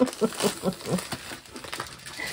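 Clear plastic wrapping crinkling as a rolled diamond-painting canvas is slid out of its sleeve. A voice murmurs briefly in the first second.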